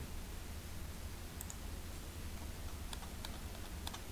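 A few faint computer mouse clicks, one about a third of the way in and several close together near the end, over a low steady hum.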